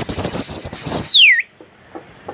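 A person whistling loud and shrill, with a fast warble of about six wavers a second held for about a second, then sliding down in pitch and cutting off; the kind of whistle pigeon flyers use to signal a circling flock.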